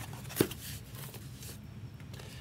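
Cardboard case being handled and shifted, with one sharp tap about half a second in, then faint scuffing of cardboard.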